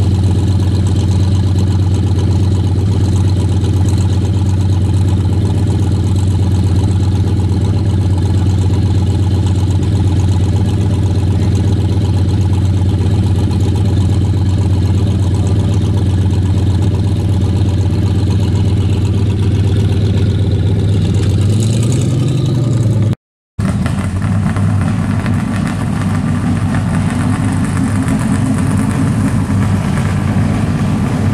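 Engine of a late-1970s Chevrolet Malibu coupe idling with a steady, deep exhaust note as the car rolls slowly past, with a brief rev about 22 seconds in. After an abrupt cut, a classic Ford Mustang coupe's engine runs with a higher, rougher note as it pulls by.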